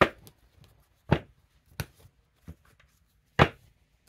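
Oracle cards being handled on a wooden table: five sharp, irregularly spaced knocks, the loudest at the start and about three and a half seconds in.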